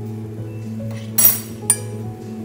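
Background music with two clinks of a utensil against a glass measuring cup, the first, louder one about a second in with a bright ringing tail, a softer one half a second later.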